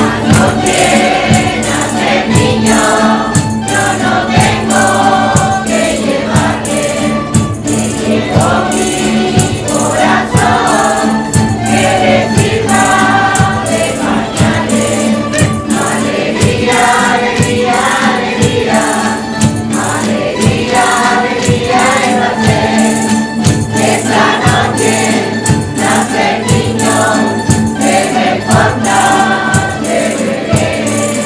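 Mixed folk choir singing a Spanish Christmas carol (villancico) in unison to steadily strummed acoustic guitars and lutes, with a tambourine shaking along to the rhythm.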